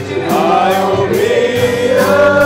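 Church congregation singing a worship song together with band accompaniment and a steady beat, getting a little louder near the end.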